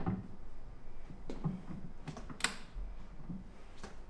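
Click-type torque wrench being pulled to tighten a D16T duralumin stud in a vise to 9 kgf·m: a few short faint clicks from the wrench and fitting, with one sharper click about two and a half seconds in, over a low hum.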